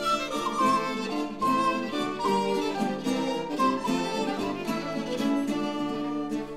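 Instrumental break in a traditional English carol: a fiddle plays the tune over plucked-string accompaniment, moving quickly from note to note.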